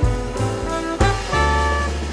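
Small jazz band playing a bright, swinging jazz waltz: alto saxophone and trumpet hold long notes together in harmony over upright bass and drum kit, with drum strikes about a second apart.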